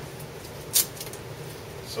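Handling noise at a workbench: one sharp click about a second in as a small model paint jar is handled at the shaker rig, over a steady low hum.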